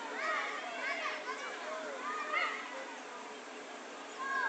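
Several children shouting and calling to each other while playing football, with high voices overlapping in short bursts.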